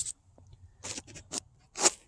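Paper information leaflet being handled and slid across a tablecloth: a few short rustles and scrapes about a second in, with a sharper brush of paper near the end.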